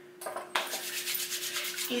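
Hands rubbing hair oil in: a fast rasping rub of skin on skin and hair that starts about half a second in and stops just before the end, over a faint steady hum.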